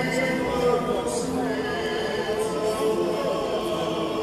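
A large crowd of marchers singing together, many voices overlapping on long held notes.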